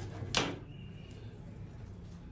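A single brief handling noise about half a second in, from a cloth tape measure being laid and pressed onto fabric on a table. The rest is quiet room tone with a steady low hum.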